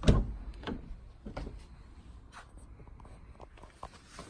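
A car door being opened: a sharp latch clunk, the loudest sound, then a few lighter knocks and handling sounds as the door swings open.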